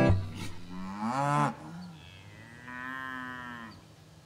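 Beef cows mooing: two calls, a short, louder one about a second in and a longer, fainter one in the second half.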